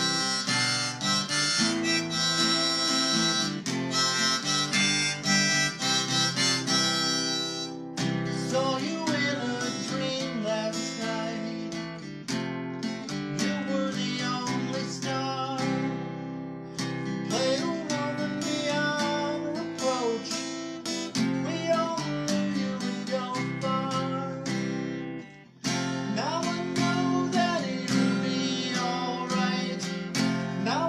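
Acoustic guitar strummed with a harmonica playing a bending melody line: an instrumental opening to a folk-style song, with no singing. The music dips briefly about 25 seconds in, then resumes.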